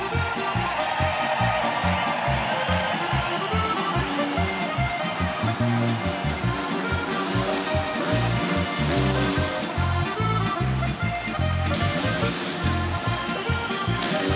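Slovenian folk-pop band playing an instrumental polka passage, a Limex diatonic button accordion leading over a steady oom-pah bass beat.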